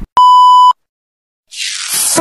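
Editing sound effect: a loud, steady beep like a TV test-pattern tone lasting about half a second, then a moment of dead silence, then a swelling hiss of static near the end.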